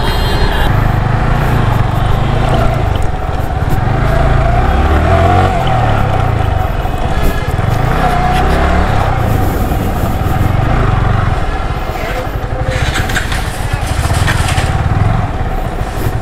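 Freshly serviced Yamaha R15's single-cylinder engine running as the bike is ridden slowly, its pitch rising and falling with the throttle. A spell of rushing hiss comes about three-quarters of the way through.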